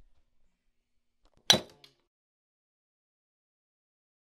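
A single sharp strike of a Glock slide's all-steel front sight hammered against a cement block, about one and a half seconds in, with a small second knock right after.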